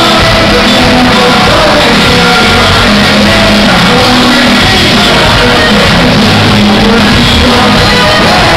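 Live band music played loud in a large hall and recorded from among the audience, with singing and the crowd shouting along.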